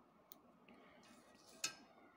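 Scissors snipping crochet yarn and being handled: a faint click early on, then one sharper click about one and a half seconds in, over near silence.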